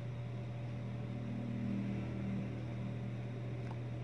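Background road traffic: a vehicle engine's drone swells and fades between about one and two and a half seconds in, over a steady low hum.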